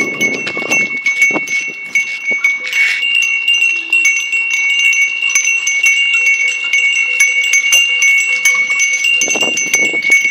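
Bells on a herd of walking Kankrej cattle, ringing continuously: a steady high ringing with many small knocks as the bells swing.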